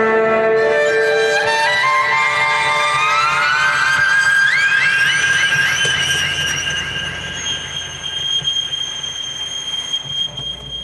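Solo violin, amplified, playing a line of notes that climbs step by step in pitch to a held high note with repeated quick upward slides. It grows quieter near the end.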